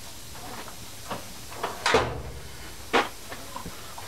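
A few separate knocks and clunks of objects being handled at a steel workbench, three in all, the middle one the loudest with a dull low thud.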